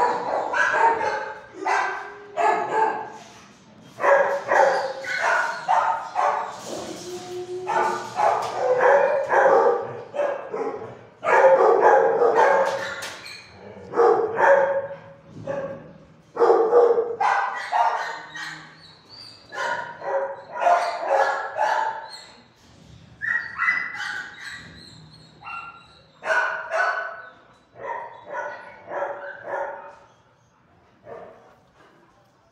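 Dogs barking in repeated loud bursts in a hard-walled shelter kennel block with steel-barred runs.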